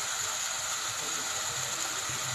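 Hot oil sizzling and bubbling steadily in a steel cooking pot on the stove.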